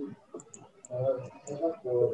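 Light computer mouse clicks, several scattered short ticks, as a wall is drawn in Revit, with a low voice speaking in the second half.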